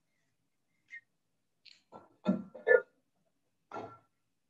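Kitchenware being handled: a small click about a second in, then a few short clinks of a glass vinegar bottle against a small ceramic measuring cup, each ringing briefly. The two loudest come close together about halfway through, and one more comes near the end.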